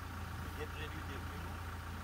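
Safari vehicle's engine idling: a steady low rumble, with faint murmured voices.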